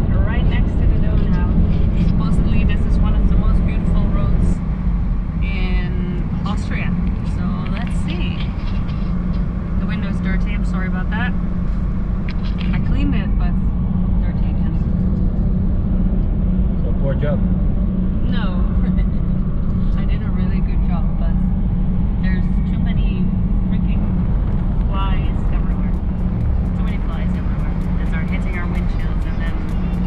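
Steady engine and tyre drone of a Toyota Land Cruiser 76 series at road speed, heard from inside the cab. Music with voices plays over it.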